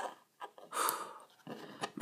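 A click at the start and a few small clicks of plastic Lego pieces being handled, with a short breath-like rush of air close to the microphone about a second in.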